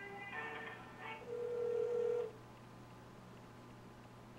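On-hold music heard over a telephone line, ending about a second in, followed by a single steady tone lasting about a second, after which the line stays quiet.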